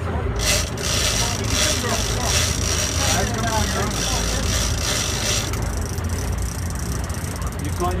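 Big-game fishing reel's drag buzzing as a hooked striped marlin pulls line, starting about half a second in and cutting off about five and a half seconds in, over a steady low rumble from the boat.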